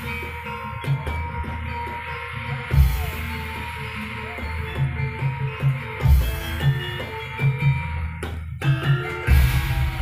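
Live Javanese gamelan music for a jaran kepang dance: drums beating under steady ringing metal tones, with a bright crash about every three seconds.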